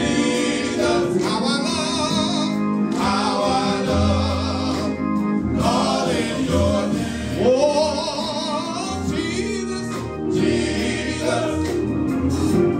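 Male gospel vocal group singing in harmony, a lead voice with wavering held notes over the others and a steady low bass line underneath.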